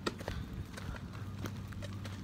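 A few sharp, irregular clacks and knocks, with a low steady hum underneath.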